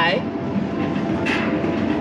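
Casino floor background: a steady dense murmur of crowd and slot machines, with faint steady electronic tones from the machines.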